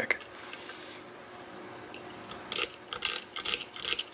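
Lock pick raking the wafers of a small stainless Knog padlock, with light tension on the keyway: a quick run of scratchy metal clicks begins a little past halfway, after a quieter start with a couple of faint clicks.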